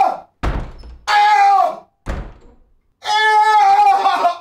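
An office door slamming shut twice, each slam followed by a long, high-pitched yelp of pain from a man; the second yelp, near the end, is the longer.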